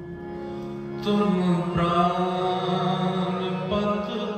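Gurbani kirtan: harmonium chords held under a sustained sung devotional line. It swells louder and brighter about a second in.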